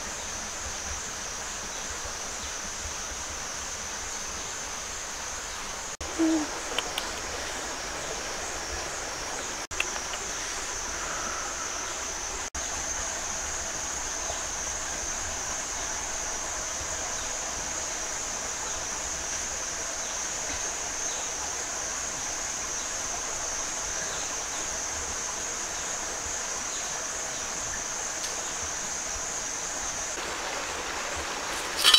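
Steady high-pitched drone of cicadas in forest. About six seconds in there is a short low call with a few clicks, the loudest moment.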